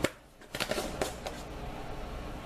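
Chicken fricassee simmering in a pot on a stovetop at medium heat, with a few small irregular pops and crackles over a steady low hiss.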